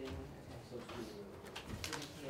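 Low murmuring voices with paper being handled, including a short rustle of pages near the end.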